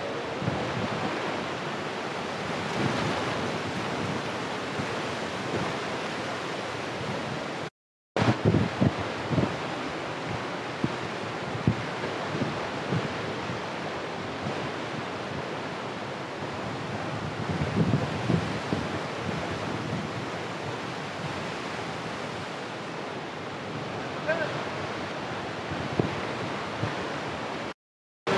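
Mountain river rapids rushing steadily over rocks, with wind buffeting the microphone in low bumps. The sound drops out for a moment about eight seconds in.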